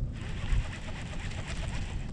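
Steady low rumble of wind buffeting the microphone, with a faint even hiss above it.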